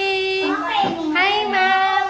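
A high voice singing long held notes: one note, a rise in pitch about half a second in, then another long sustained note.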